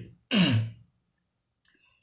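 A man clears his throat once, about a third of a second in: a short, raspy voiced sound falling in pitch.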